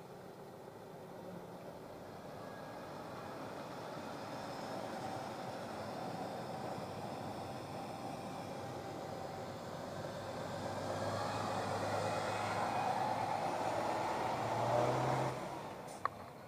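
Heavy trucks driving slowly past, their diesel engines growing louder. A low engine drone comes in in the second half and is loudest just before the end as a crane truck goes by.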